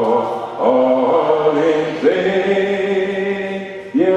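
A man's voice singing a slow hymn into a microphone, drawing out long held notes, with no instruments; a new phrase begins about half a second in and another about two seconds in.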